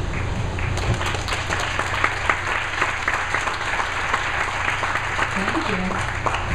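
Audience applauding, a dense patter of hand claps that starts about a second in, over a steady low hum.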